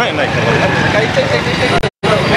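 Several men talking over one another while walking along a street, with a steady low rumble underneath. The sound cuts out abruptly for a moment just before the end.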